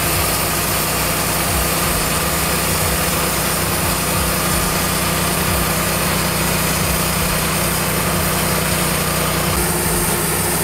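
Wood-Mizer LT15 portable sawmill's engine running steadily.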